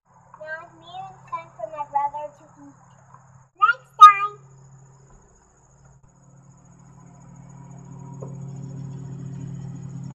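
Young children's voices in short high calls and babble, the loudest a brief shout about four seconds in. A low steady hum then fades in and grows through the last few seconds.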